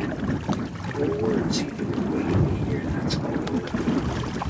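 Steady low noise aboard a small sailing boat, with faint, indistinct speech over it.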